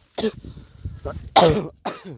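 A sick man coughing: a short cough just after the start, then a louder, harsher cough about one and a half seconds in.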